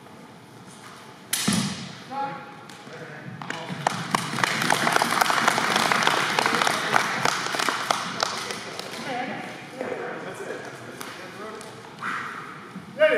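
One sharp crack of a strike between the fighters' weapons about a second in. About two seconds later comes a stretch of clapping and voices from the onlookers lasting several seconds, which then fades to scattered talk.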